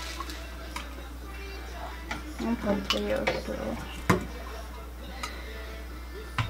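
Light clicks and taps of a plastic measuring spoon against a small plastic cup on a digital scale as shampoo is scooped and trimmed for weighing, with one sharper knock about four seconds in.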